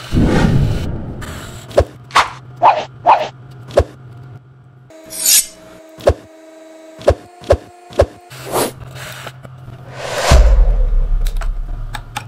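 Power drill driving screws into a wooden post in loud bursts, one at the start and one near the end. In between come several sharp clicks and a few brief musical tones.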